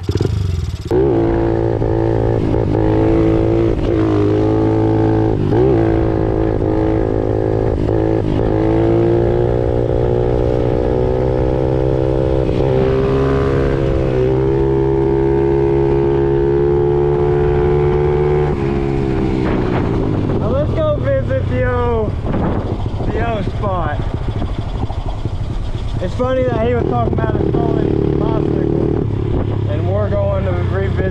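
Honda CRF50's small single-cylinder four-stroke engine pulling the bike along at a nearly steady pitch, heard from on the bike. About eighteen seconds in the engine note drops off, and for the next several seconds it rises and falls quickly as the throttle is opened and closed.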